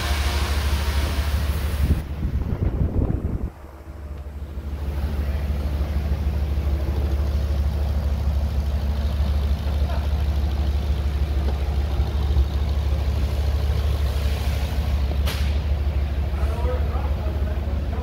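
2012 Ford F-150's 5.0-litre V8 running at a steady idle.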